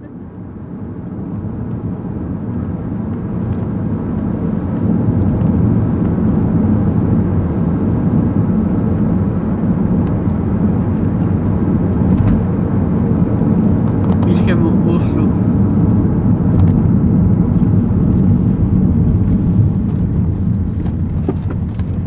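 In-cabin road noise of a car driving on a motorway: a steady, loud rumble of engine and tyres, swelling over the first few seconds.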